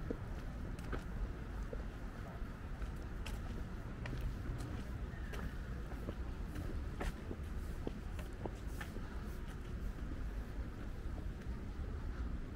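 Footsteps on a paved path, light clicks about every second, over a steady low rumble.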